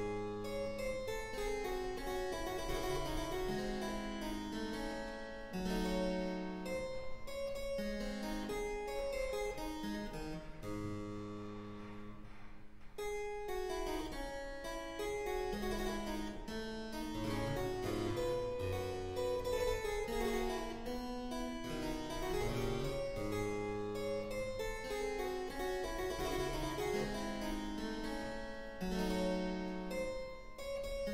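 Solo two-manual harpsichord playing a Baroque keyboard piece, with a short break in the music about twelve seconds in.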